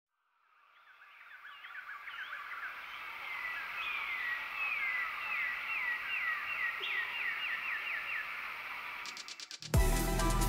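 Outdoor ambience fading in, with animal calls: a long run of high, quick descending chirps repeated several times a second. Just before the end a rapid ticking starts, then music with a beat cuts in loudly.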